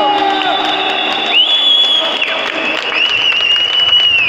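Two long, high whistle blasts, the first lasting about a second and the second starting near the three-second mark and held to the end, over shouting and crowd noise.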